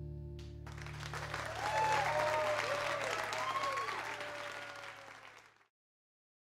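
A live band's final chord ringing out and fading, then from about half a second in an audience applauding and cheering, with shouts rising and falling in pitch. The sound cuts off abruptly near the end.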